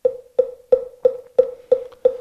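Moktak (Korean Buddhist wooden fish) struck in an even beat, about three knocks a second, each with a short pitched ring, keeping time for sutra chanting.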